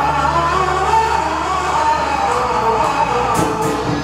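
Live accompaniment music for Taiwanese opera (gezaixi), a melody line wandering over held low notes, with little or no singing.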